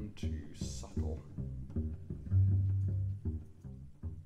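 Acoustic guitar picked loosely: a run of short, low single notes, with one note held for about a second just after halfway through.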